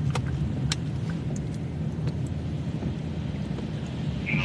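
Steady low rumble of a moving car heard from inside the cabin: engine and road noise, with a couple of small clicks in the first second.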